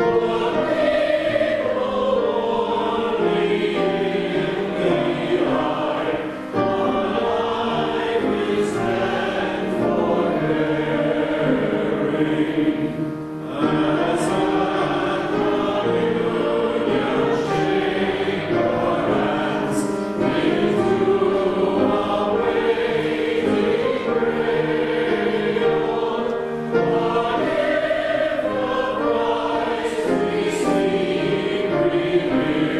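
Church choir singing in parts, holding long notes that move from chord to chord, with brief breaks in the sound about six and thirteen seconds in.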